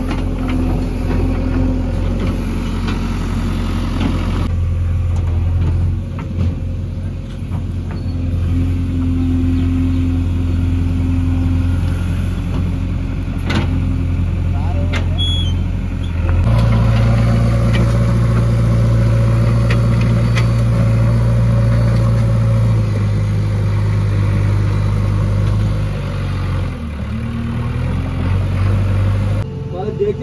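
JCB 3DX backhoe loader's diesel engine running steadily under working load. About halfway through, the engine note steps up to a higher speed and holds, then drops back near the end, with a few short knocks from the machine in between.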